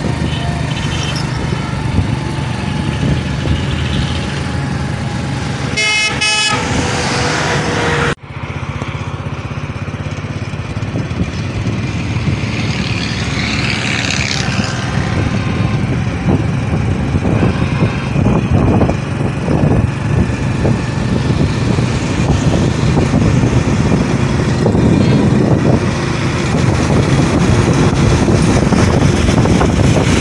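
Steady engine and road noise heard from a moving vehicle on a highway, with a vehicle horn sounding for about a second about six seconds in. The sound drops out suddenly for a moment at about eight seconds.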